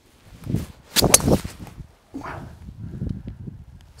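A golf driver swung at full length through the ball at about 103 mph clubhead speed, with a whoosh and then the sharp crack of impact on the teed ball about a second in. The ball is struck a little off the toe.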